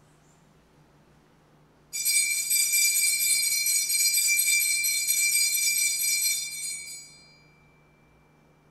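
Altar bells shaken at the elevation of the chalice during the consecration: a bright jingling ring that starts suddenly about two seconds in, holds for about five seconds, then dies away, one tone lingering as it fades.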